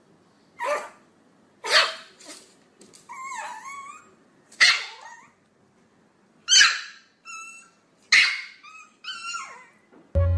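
A small Chihuahua barking in about six short, sharp yaps spaced a second or two apart. Longer whining calls come between them, around three seconds in and again near the end.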